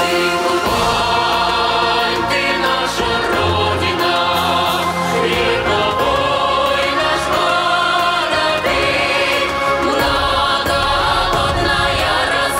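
Large massed choir of children and teenagers singing together, loud and sustained.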